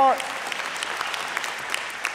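A large audience applauding: a steady patter of many hands clapping.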